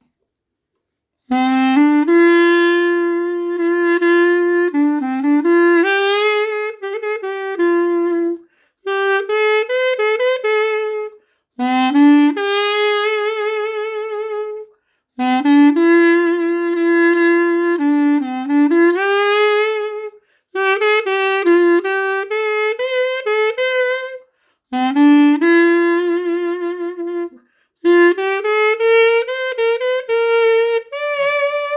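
Classic Xaphoon (a plastic single-reed pocket sax) played solo: a slow melody in short phrases separated by brief breath pauses, with vibrato on the held notes. It starts about a second in.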